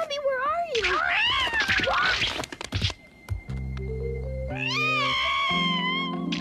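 Cartoon cat yowling in two long calls that slide up and down in pitch, with a few quick clicks between them, over background music.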